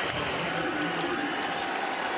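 Stadium crowd noise in a football broadcast, a steady wash of many voices.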